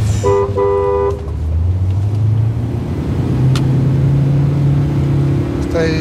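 A car horn sounding two short blasts in quick succession, followed by a car engine running steadily in slow city traffic.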